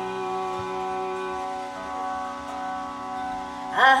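Indian harmonium and tanpura holding a steady drone chord between sung phrases, with one note of the chord shifting about halfway. Near the end a woman's voice slides up into the next line.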